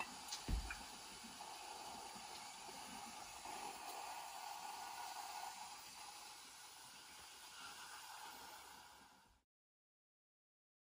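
Redmond electric waffle iron cooking batter, with a faint steady hiss and sizzle of steam escaping from around its closed plates, and a soft thump about half a second in. The sound cuts off abruptly shortly before the end.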